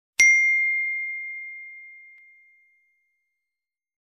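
A single bell ding sound effect for an animated subscribe button's notification bell being clicked. It is struck once and rings out, fading away over about two and a half seconds.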